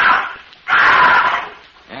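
Radio-drama sound effect of a condor giving two harsh, loud screeches, the second longer than the first.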